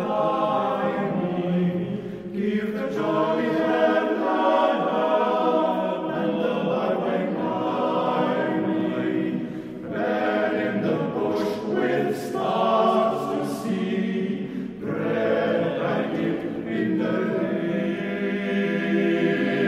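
Men's choir singing in long sustained phrases, with short breaths between phrases about two, ten and fifteen seconds in.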